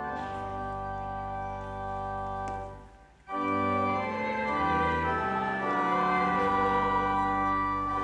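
Organ playing a hymn in held chords. It stops briefly about three seconds in, then comes back in louder.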